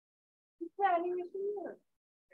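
A person's voice making a brief wordless sound, starting a little over half a second in and lasting about a second, with a pitch that holds and then bends.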